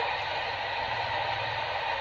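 Steady cab noise of a moving truck: a low engine hum under an even hiss of road and recording noise.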